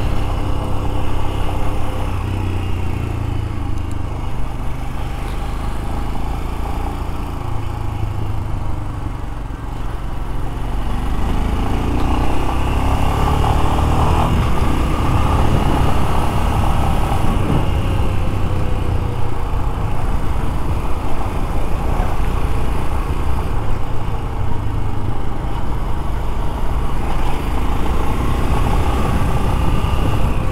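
Royal Enfield Scram 411's air-cooled single-cylinder engine running on the move. It eases off about ten seconds in, then accelerates with a rising pitch and runs on at a steady, louder pace.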